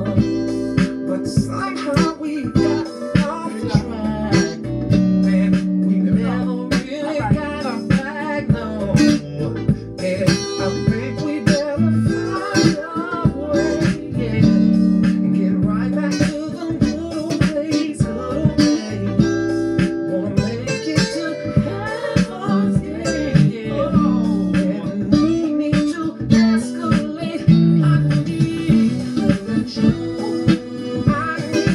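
Stratocaster-style electric guitar played along to a recorded R&B song, with a steady drum beat, bass and singing.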